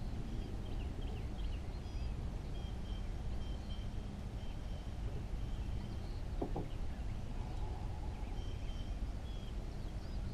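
Birds calling in the background, short high whistled notes repeated every second or so, over a steady low rumble.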